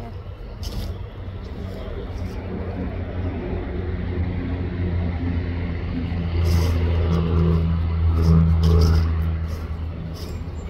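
A motor vehicle's engine drawing near and passing, a low steady hum that builds to its loudest late on and then starts to fade, with a few light clicks over it.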